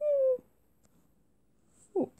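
A cat's single short meow, sliding slightly down in pitch, followed by near silence.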